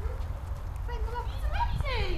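People's voices, with one voice sliding steeply down in pitch near the end, over a steady low rumble.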